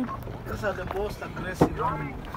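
Quiet voices talking over a steady low hum, consistent with the safari vehicle's engine idling.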